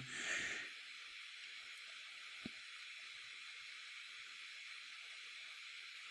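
Faint steady hiss of microphone and recording noise, with one faint tick about two and a half seconds in.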